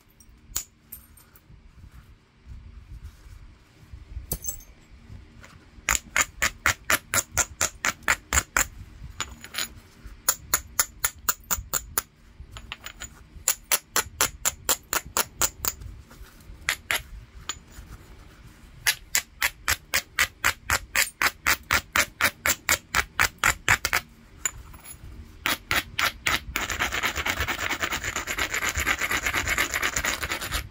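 The edge of a heat-treated Mississippi gravel chert preform being ground in quick back-and-forth strokes, about five a second, in several runs, then rubbed continuously near the end: platform preparation before the next strike.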